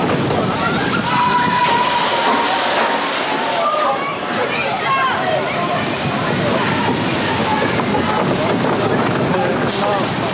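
Vekoma mine-train roller coaster train running along its track: a continuous rattle and rush of noise, with riders' voices over it and a thin steady tone for about two seconds near the start.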